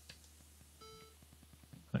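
A short, faint electronic beep about a second in: a single buzzy tone from the computer, the alert sound that goes with each access fault the Copland system throws.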